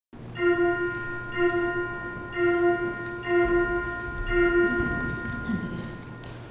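A single bell struck five times, about once a second, at the same pitch each time, each stroke ringing on into the next.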